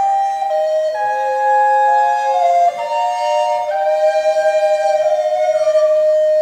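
Small Renaissance early-music ensemble playing: recorders carry interweaving held melody lines over hurdy-gurdies, the notes changing every half second to a second.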